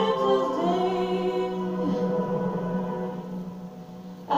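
A song played from a television: a singer with choir-like backing voices holding long, sustained notes, growing quieter near the end.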